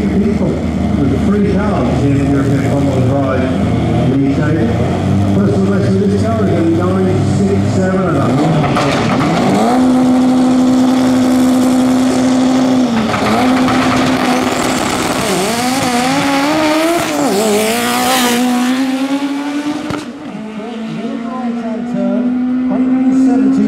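Drag-racing cars at the start line: engines blipped unevenly while staging, then held at a steady high rev for about three seconds before launching. The run follows with engine pitch climbing and dropping at each upshift.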